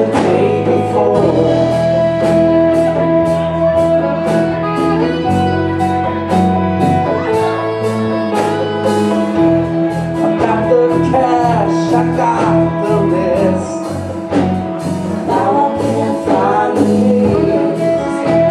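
Live blues-funk band playing a steady groove: drum kit, congas, electric guitars and bass, with a lead melody line bending in pitch over the top.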